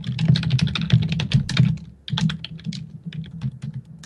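Typing on a computer keyboard: a fast run of key clicks, a short pause about halfway, then slower, lighter keystrokes.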